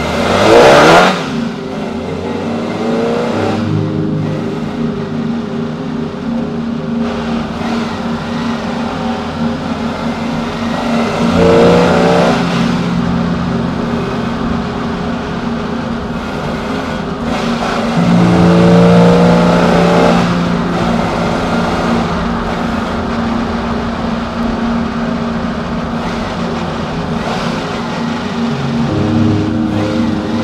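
Peugeot 205 XS's carburetted four-cylinder engine pulling under acceleration, its revs climbing several times between stretches of steady running, with the loudest burst of engine noise in the first second.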